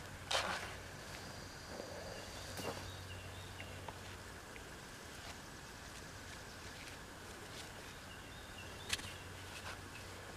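Quiet outdoor garden ambience with a few soft knocks and rustles as seed potatoes are handled and set into loose soil, the sharpest one near the end. Faint short high chirps sound in the background in the first half.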